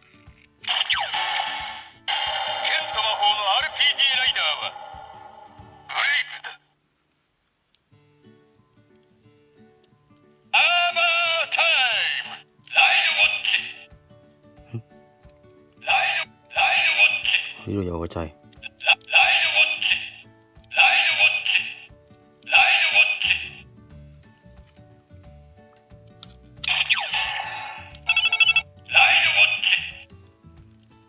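Bandai Kamen Rider Zi-O GP Ride Watch toy playing electronic sound effects, voice calls and short music jingles through its small built-in speaker. The sound comes in repeated bursts as its button is pressed, thin and tinny with no bass.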